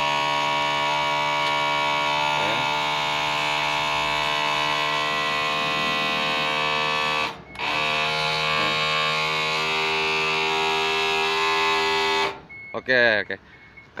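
The electric-hydraulic cab-tilt pump of a Mitsubishi Fuso Super Great truck running with a steady hum as it raises the cab. The hum cuts out briefly about halfway through, then stops near the end as the cab reaches full tilt.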